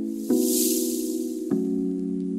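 Outro background music: held chords that change about every second, with a hissing whoosh that swells and fades over the first second and a half.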